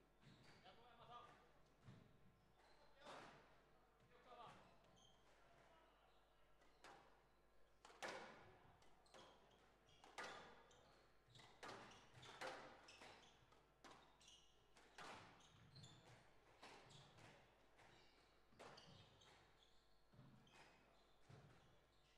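A squash rally: racquets striking the ball and the ball hitting the walls, a series of sharp knocks one to three seconds apart, fairly faint and echoing in the hall.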